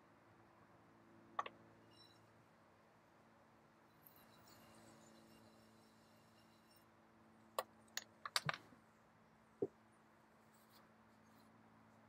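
Near silence: a faint steady hum with a few light taps and clicks, one about a second and a half in, a short cluster past the middle and one more soon after.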